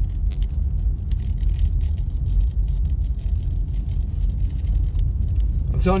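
Car cabin noise while driving on a snow-packed road: a steady low rumble of the engine and tyres, heard from inside the car.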